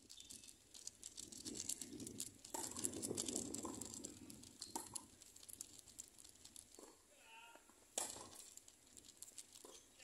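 Faint outdoor tennis-court ambience with scattered light taps and clicks, then a single sharp pop about eight seconds in: a tennis ball struck by a racket on the serve.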